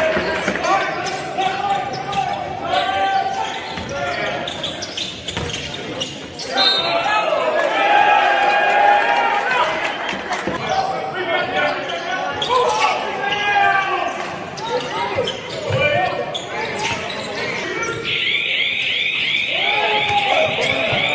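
Live game sound from an indoor basketball court: a basketball bouncing on the hardwood floor in repeated sharp knocks, with players' and bench voices calling out, all echoing in a large sports hall.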